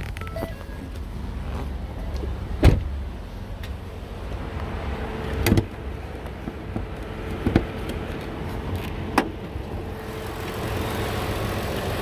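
A 2014 Ford Explorer idling steadily and quietly, with four sharp clunks as the hood is released and opened; the loudest comes about three seconds in.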